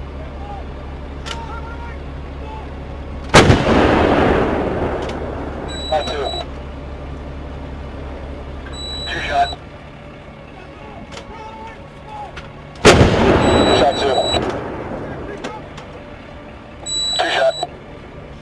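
Two loud blasts about nine and a half seconds apart, each starting suddenly and rumbling away over a second or two, with shorter, fainter sounds between them.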